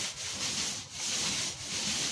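Paint roller loaded with wet latex paint rolling up and down a wall, a steady rubbing swish that dips briefly between strokes, under a second apart.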